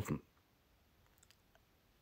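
Near silence, with a few faint small clicks a little past the middle.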